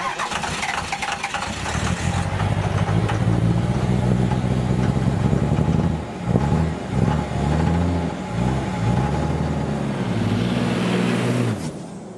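A vehicle engine starting, then running with its pitch rising and falling as it is revved, cutting off abruptly near the end.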